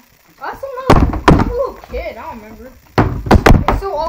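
Plastic water bottle being flipped and landing on a table top: loud, sharp thuds, two about a second in and three more in quick succession around three seconds in.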